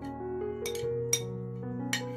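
Background music playing steady notes, with a metal spoon clinking a few times against a glass mug and a ceramic plate while scraping a mixture into the mug.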